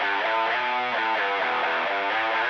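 Outro music: a guitar picking a repeating run of single notes, several a second, sounding thin and muffled.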